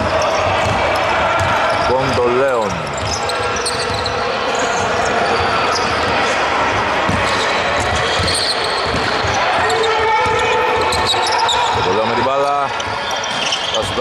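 A basketball is dribbled on a hardwood court, with repeated bounces echoing in a large sports hall and voices in the background. Sneakers squeak on the wooden floor about two seconds in and again near the end.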